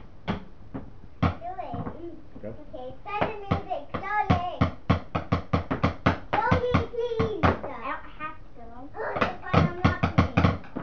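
A child's voice over a quick run of sharp knocks, about four to five a second, thickest through the middle of the stretch.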